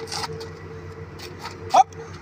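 A brief, loud, high-pitched vocal shout near the end, over a steady low hum of road traffic. A short rustle of movement comes just after the start.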